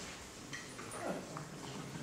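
A hush in a lecture hall: quiet room tone with a few faint, brief voice-like sounds about half a second and a second in.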